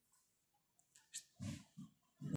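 Mostly near silence: room tone. A faint click comes a little after a second in, followed by a few short, faint low sounds.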